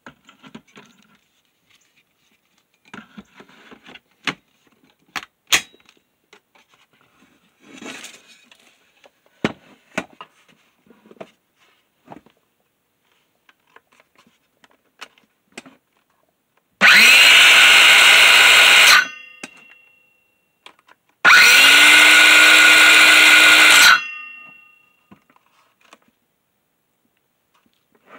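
Porter Cable PC186CS 18-volt cordless circular saw run twice, about two and then three seconds, the motor spinning up at each trigger pull and winding down after release: the repaired battery contact is now connecting. Before that, clicks and knocks of the battery pack being handled and fitted into the saw.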